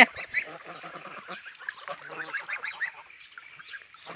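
Young domestic geese calling in many short, high-pitched calls, fading out in the last second.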